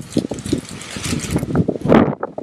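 Wind buffeting the camera microphone, a loud rushing noise that thickens about halfway through.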